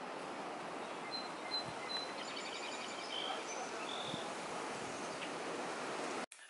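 Outdoor ambience: a steady background hiss with a few short, high bird chirps and calls scattered through, the busiest run a little over two seconds in.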